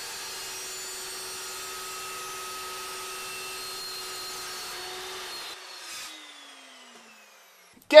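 Chop saw motor running at a steady speed with a constant whine while cutting 3-inch ABS plastic pipe. It is switched off about five and a half seconds in, and its pitch falls as the blade spins down.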